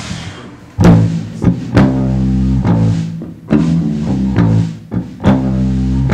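Electric bass guitar playing a riff in low, plucked notes with sharp attacks, starting a little under a second in.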